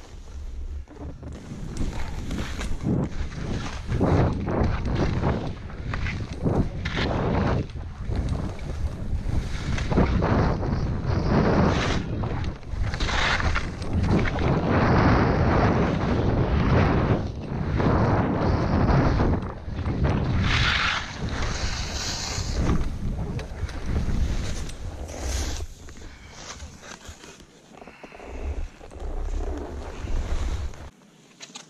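Wind buffeting a skier's helmet- or chest-mounted GoPro microphone, with skis hissing through soft snow, swelling and dropping turn after turn and easing near the end.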